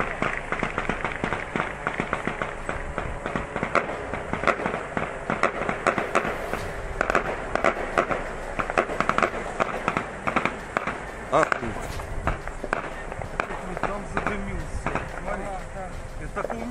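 Rapid, irregular popping and sharp cracks that carry on throughout, several louder cracks standing out, with indistinct voices underneath.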